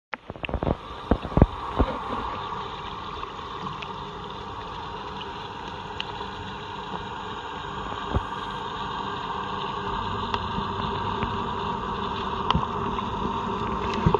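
Swimming-pool water heard through a submerged camera: a steady, muffled rush that slowly grows louder as the swimmer comes closer, with a cluster of sharp clicks and knocks in the first two seconds and a few single ticks later.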